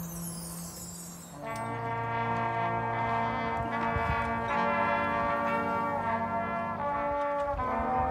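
Marching band brass section playing: a quiet low held note at first, then the full brass comes in loud about one and a half seconds in and moves through a series of held chords.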